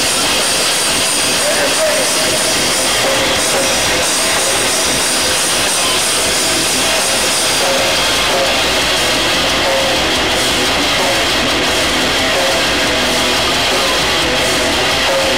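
Live hardcore band playing loud, a dense wall of distorted electric guitars and drums that stays at one level throughout.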